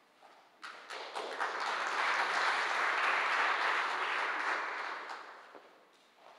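Conference audience applauding: the applause starts about half a second in, swells, and dies away near the end.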